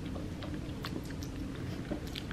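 Faint mouth sounds of sipping a thick milkshake through a plastic straw and swallowing, with a few soft clicks scattered through it.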